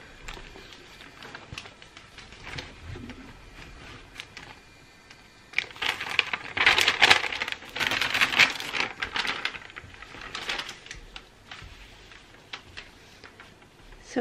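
Paper backing sheet rustling and crackling as it is handled and an iron is pressed and moved over it on felt, with a dense spell of crackling about halfway through and a shorter one a little later.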